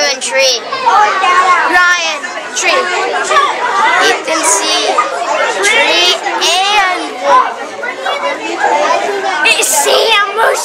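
Children's chatter: several young voices talking over one another with no pause.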